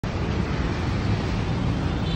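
Steady, even rumble of heavy rush-hour road traffic.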